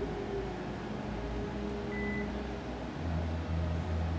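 Steady low hum of room noise, a constant mechanical drone with no speech over it.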